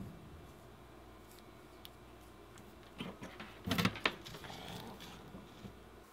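Soldering iron and small tools being handled on a workbench: a few light clicks and knocks, the loudest cluster about three to four seconds in, over quiet room tone.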